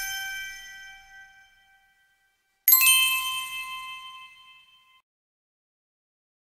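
A bell-like chime rings and slowly fades, then is struck again about three seconds in, a bright cluster of high ringing tones dying away over about two seconds.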